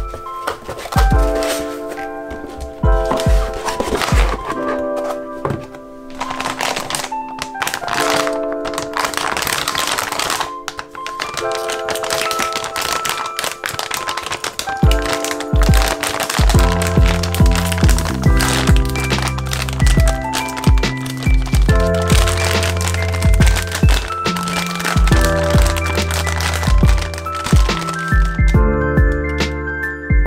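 Background instrumental music: sustained chords over a steady beat, with a deeper bass line joining about halfway through.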